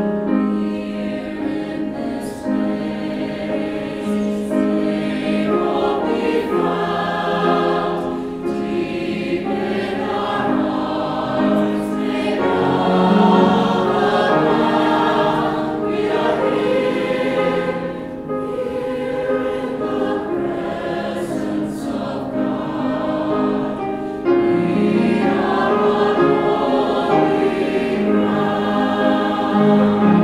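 Mixed choir of men's and women's voices singing, accompanied by piano, with a louder new phrase entering a little after two-thirds of the way through.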